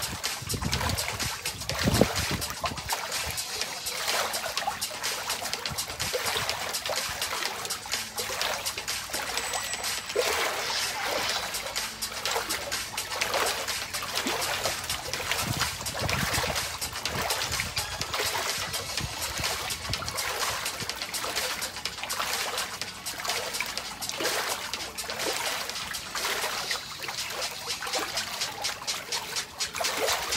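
Water splashing and sloshing continuously in a shallow inflatable paddling pool, churned by a person lying in it twisting and moving their legs.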